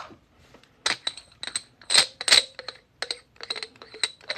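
Sharp, irregular metallic clinks and taps from the steel parts of a coin ring centre hole punch being handled and set on a steel bench block, each with a short ring; the loudest come about two seconds in.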